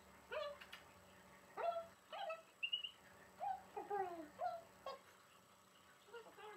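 Eight-week-old Queensland heeler puppies whining and yipping: a string of about ten short, high cries, each sweeping up or bending down in pitch, over the first five seconds.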